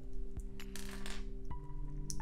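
Background music of held, steady notes that change about one and a half seconds in, over a few small clicks and clinks of plastic LEGO bricks being handled and a brief rattle of pieces shortly before the one-second mark.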